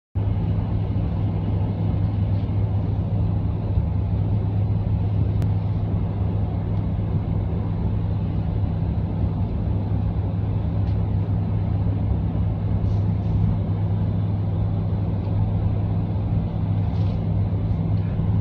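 Steady low drone of a car driving along a road, heard from inside the cabin: engine hum and tyre and road noise, even throughout.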